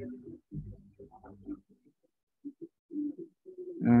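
A man's quiet, indistinct muttering under his breath in short low syllables, ending in a louder "uh".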